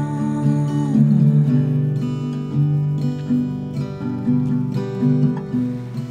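Acoustic guitar strummed in a steady repeating chord pattern. A held, wavering hummed note slides down and ends about a second in.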